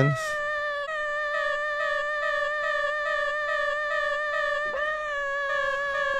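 FRMS granular synthesizer sounding one sustained note made from a looped kitten's meow sample: a steady held tone with a faint flutter in it.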